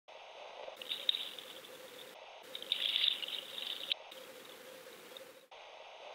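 Outdoor ambience: high chirping over a steady hiss, changing abruptly several times as if cut together, with louder chirps about a second in and around three seconds in.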